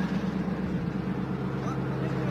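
Heavy tank engine idling steadily, with a fast, even low throb.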